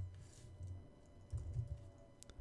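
Faint typing on a computer keyboard, in two short runs of keystrokes.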